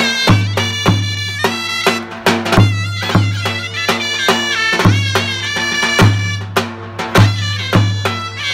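Two zurnas play a Turkish folk melody with a loud, reedy tone over a davul pounding a steady beat.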